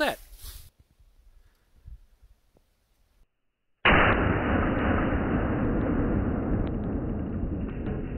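A rifle shot strikes a small propane cylinder about four seconds in, and the leftover propane jets out of the bullet hole with a steady, loud hiss that slowly fades. The cylinder still held some pressure.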